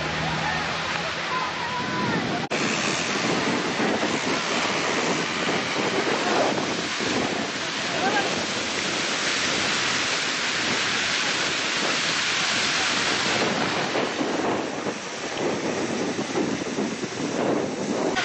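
A wheat field burning: a steady rushing noise of the fire and wind on the microphone, with a few faint voices calling now and then.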